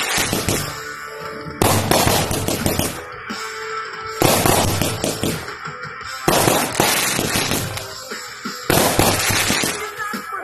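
A consumer aerial firework cake firing four shots about two to two and a half seconds apart. Each shot is a sharp bang followed by a fizzing, crackling burst that fades before the next.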